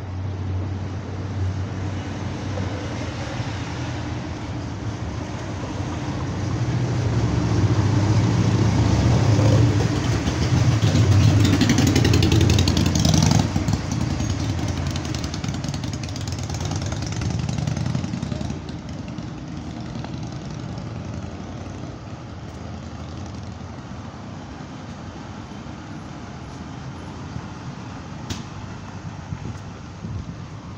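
City street traffic: the engine of a heavy vehicle passing close by swells to a loud peak about a third of the way in, then fades into a steady traffic hum.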